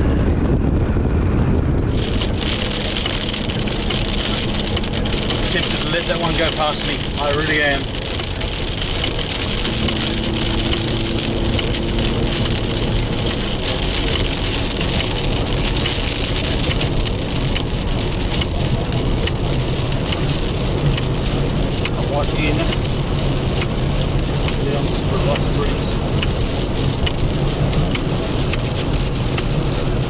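Rain hitting a vehicle's roof and windscreen, heard from inside the cabin over a steady low road-and-engine rumble; the rain noise starts suddenly about two seconds in and then holds steady.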